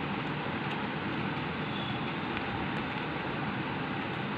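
A steady rushing background noise with no distinct events in it.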